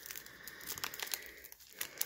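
Foil wrapper of a Panini Mosaic basketball card pack crinkling as it is torn open by hand, with a few sharper crackles in the second half.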